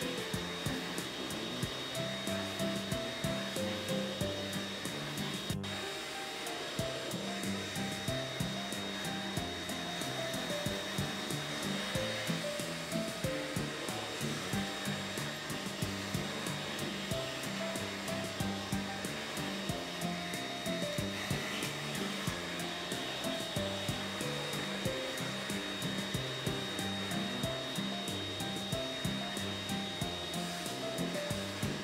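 Pet grooming vacuum running steadily with an even high whine as its brush head is worked over a dog's coat. Background music with a steady beat and a simple melody plays throughout.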